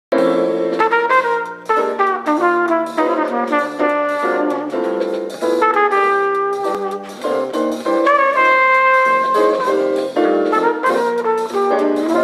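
Trumpet playing a jazz melody over an accompaniment with a stepping bass line, with one long held note about eight seconds in.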